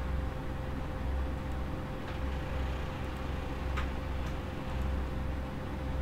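Steady low background hum that swells and fades about once a second, with a constant mid-pitched tone over it and a few faint clicks near the middle.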